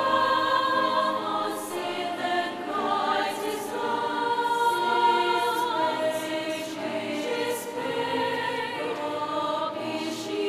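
A large mixed choir of men and women singing, holding long chords with the sung consonants coming through as soft hisses.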